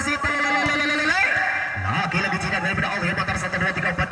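Several people's voices shouting and calling over one another during a volleyball rally. One voice holds a long note through the first second, then rises.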